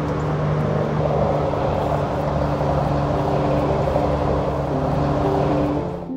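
A steady outdoor rushing noise, loud and even, with soft background music's held low notes under it; the noise cuts off suddenly at the very end, leaving only the music.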